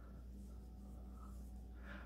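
Faint scratching and rustling of a metal crochet hook drawing cotton yarn through the stitches while working a double crochet, over a low steady hum.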